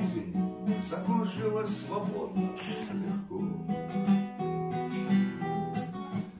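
Acoustic guitar strummed as a waltz accompaniment: steady chords with regular strokes between sung lines.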